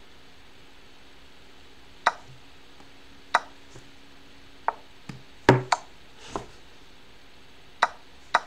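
A series of sharp, irregularly spaced clicks and knocks, about six in all and loudest as a quick double about five and a half seconds in: computer-mouse clicks and the online chess board's piece-move and capture sounds during fast blitz moves.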